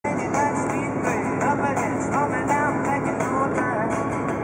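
Background music with a steady beat and a sliding, bending melody line over it.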